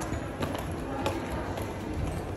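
Footsteps on a hard tiled floor, two sharp steps about half a second apart, with people talking.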